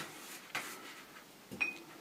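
A paintbrush making a last stroke across paper, then a sharp clink about a second and a half in as the brush is put into a glass jar, with a brief ring.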